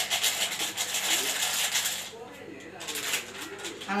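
A plastic sachet of malt drink powder rustling and rattling as it is shaken out into a steel mixer jar: a dense run of quick rustles that eases off about two seconds in and picks up again near the end.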